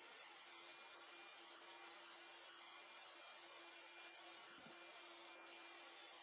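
Near silence: room tone, a faint steady hiss with a thin, faint hum.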